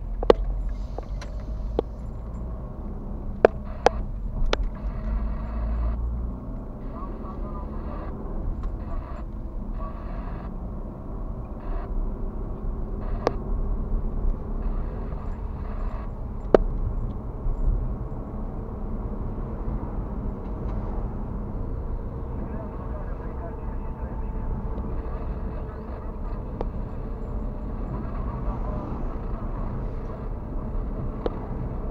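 Car driving in town heard from inside the cabin: a steady low rumble of engine and tyres on the road, with a few sharp clicks or knocks now and then.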